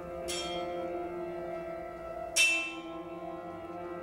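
Vibraphone in a trio with tuba and piano: two struck, bell-like notes ring out and fade over held tones, the second, about two seconds after the first, the louder.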